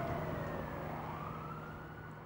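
An emergency-vehicle siren wailing over a low steady hum, its pitch rising about a second in, the whole sound fading out.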